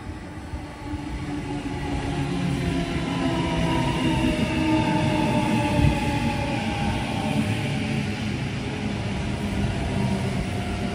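Sydney Trains Tangara double-deck electric train passing close by. Its wheel and rail rumble grows louder over the first few seconds as it arrives, under an electric motor whine that falls slightly in pitch.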